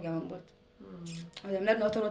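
A woman talking in conversation, with a short dip and a brief hummed sound partway through.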